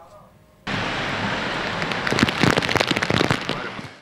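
Stormy seafront: wind and rough sea washing against a harbour quay, a dense rushing noise full of small crackles. It starts about half a second in and fades away near the end.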